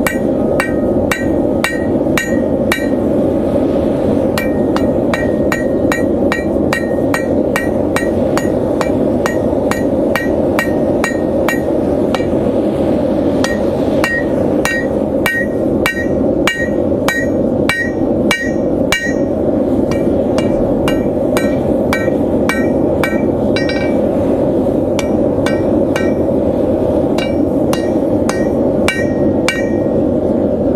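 Hand hammer blows on a steel anvil as hot steel stock is flattened. The blows come about two a second in runs with short pauses, each with a brief metallic ring.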